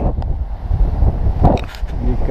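Wind buffeting the camera's microphone: a loud, uneven low rumble, with a stronger gust about one and a half seconds in.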